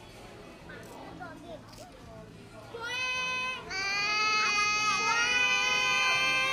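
A young child's high-pitched wailing cry starting about three seconds in: a short note, then one long held note that wavers slightly in pitch. Before it, faint chatter of a busy room.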